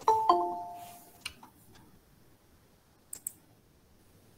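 Two-note electronic notification chime from a Google Meet call, stepping from a higher note to a lower one and ringing out over about a second, as a new participant joins. A few faint clicks follow.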